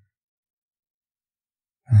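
Near silence: a dead-quiet pause in a man's soft spoken comforting. His deep voice starts again near the end.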